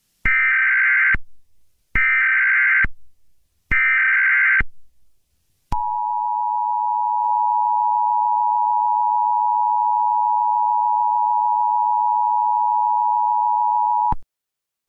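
Emergency Alert System tones: three short, screechy bursts of SAME header data, each about a second long. About six seconds in, the steady two-tone attention signal begins, holds for about eight seconds, then cuts off.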